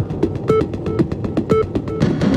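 Background music with a steady beat: quick percussive strikes and a short note repeating about once a second.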